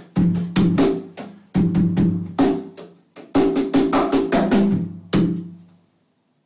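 BoxKit cajón with a walnut shell and maple tapa, played drum-set style with Cajon Brooms: a quick groove of deep, ringing bass tones and sharp slaps on the tapa. It ends with a last hit about five seconds in that rings out.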